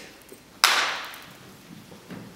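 A single sharp smack about half a second in, dying away over about half a second in the hall's echo.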